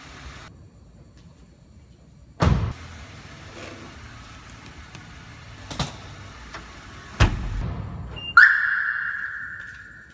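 A car door or boot lid is shut with a heavy thud twice, a few seconds apart, with a lighter click between. Then a car's alarm gives a single beep that fades out, as the car is locked with its remote.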